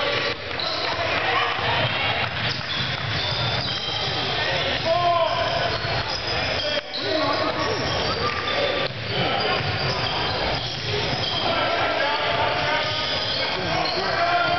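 Basketball bouncing on a hardwood gym floor during play, mixed with overlapping chatter from spectators and players, everything echoing in the large hall.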